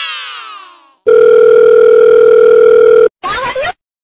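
Cartoon sound effects: a falling pitched glide that fades away in the first second, then a loud, steady electronic beep tone held for about two seconds that cuts off suddenly, followed by a short warbling squeak.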